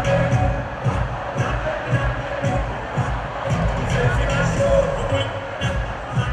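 Loud live concert music through a sound system with a steady beat of about two kicks a second, over the noise of a large crowd.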